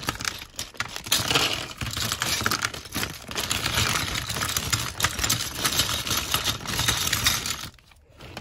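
A clear plastic bag of small plastic building bricks being handled and shaken: the bag crinkles while the bricks rattle and clatter against each other, and then they are tipped out onto the table.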